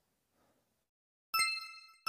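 A bright, bell-like ding sound effect for an animated subscribe button, struck once about a second and a quarter in and ringing as it fades.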